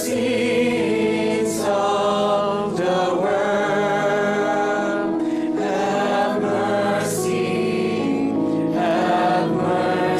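Church choir singing a slow hymn in long held notes, with the hiss of sung 's' sounds a few times.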